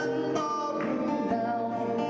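Several acoustic guitars playing a country waltz in a small live group, with a voice singing over them.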